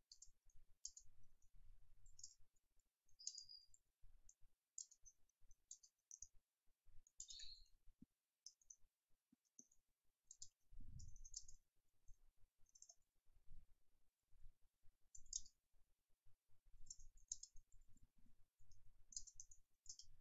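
Faint typing on a computer keyboard: quick, irregular key clicks coming in short runs. There is a soft low thump about eleven seconds in.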